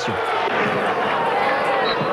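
Football stadium crowd cheering a home goal: a steady din of many voices.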